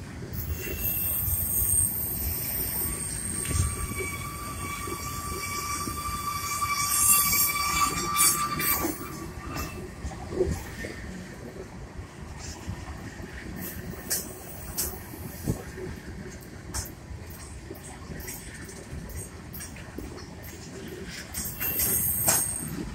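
Freight train of covered hoppers and tank cars rolling past on a curve, its wheels squealing in high, steady tones for the first nine seconds or so. After that the wheels rumble on with scattered sharp clacks, and a brief squeal returns near the end.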